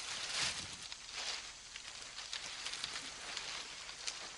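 Dry leaf litter and sticks rustling and crackling irregularly as they are gathered and handled, with a louder rustle about half a second in and another about a second in.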